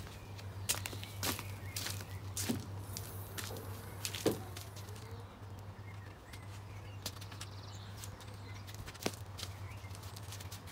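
Footsteps in flip-flops, and scattered clicks and knocks as a car bonnet is released and lifted; the loudest knock comes about four seconds in. A steady low hum runs underneath.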